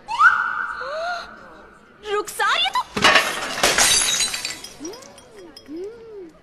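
A voice cries out, then about three seconds in a large flower vase crashes and shatters, with pieces clattering for about a second and a half before dying away.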